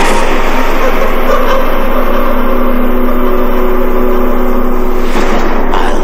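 Loud, steady wash of noise from trailer sound effects, with a low sustained drone holding from about two to five seconds in.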